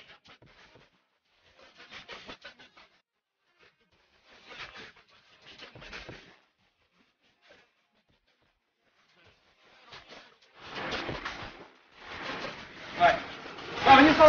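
Breathy, mostly unvoiced vocal sounds from a person close to the microphone, in short bursts that come more often and grow louder over the last few seconds, turning into voiced speech at the very end.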